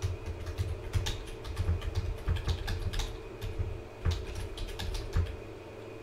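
Typing on a computer keyboard: a run of irregular key clicks and desk taps that stops about five seconds in.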